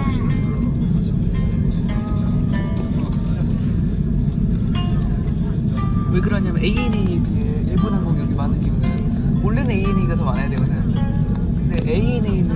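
Airbus A330 cabin noise while taxiing: a steady low rumble from the engines and the airliner rolling on the taxiway, with voices talking in the cabin.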